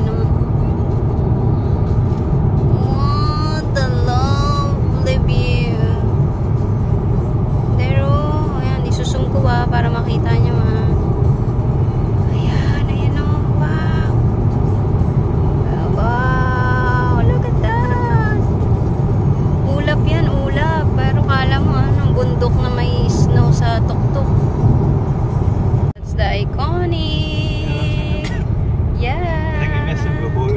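Steady low road and engine noise of a moving car heard from inside the cabin, with a song playing over it, its vocals coming and going. The sound briefly drops out about 26 seconds in.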